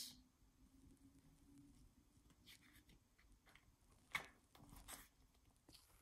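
Near silence, broken by a few faint rustles and a light tap about four seconds in, as a paper page of a picture book is turned.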